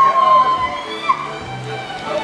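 Live Polish highland (góral) folk dance music from a small string band, with steady bass notes under it. A long, high, held note sounds over the band during the first half and bends away about a second in.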